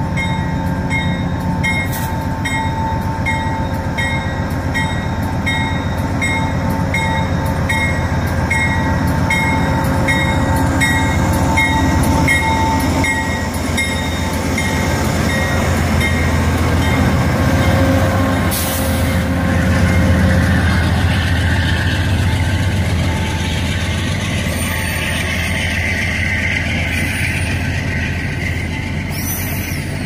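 Amtrak GE Genesis diesel locomotive and its Amtrak Cascades train arriving alongside. The locomotive bell rings steadily, about one strike every 0.7 seconds, through the first half. The diesel engine rumbles loudest as the locomotive passes close by, and then the passenger cars roll past with some wheel squeal.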